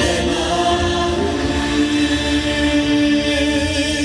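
Choir singing long held chords with backing music through a loud stage sound system, some voices sliding onto new notes about a second in.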